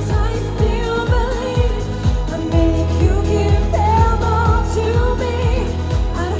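A woman singing a pop song live into a microphone over an amplified backing track, with a steady kick-drum beat of about two beats a second and a bass line.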